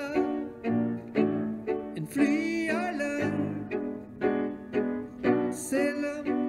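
A song played by a small ensemble: a grand piano and bowed strings accompany a singer in a slow, melodic phrase.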